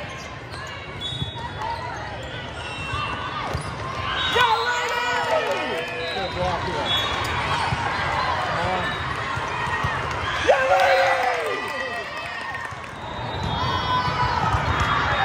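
Indoor volleyball play: the ball being struck in a rally, with players' shouted calls and the voices of people around the court, loudest about four seconds in and again about ten seconds in.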